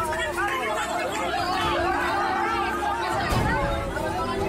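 A crowd of women's voices, many talking and wailing over one another in high, overlapping voices.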